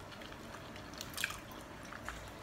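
Faint eating sounds: chewing and small wet mouth clicks, with a slightly louder cluster of clicks a little over a second in.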